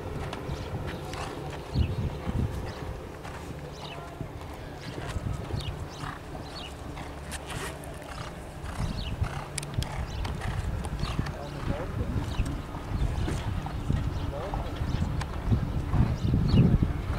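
Hoofbeats of a horse cantering on grass, with the irregular clicks and jingle of its tack.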